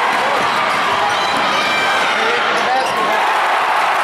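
Basketball game sound in a gym: steady crowd noise with voices calling out, and a ball bouncing on the court.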